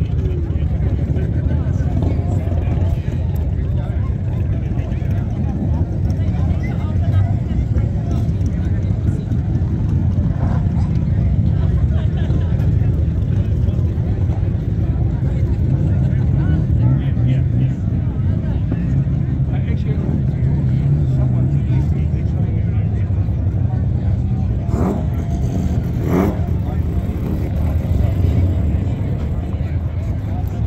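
Car engine idling steadily, with a crowd talking.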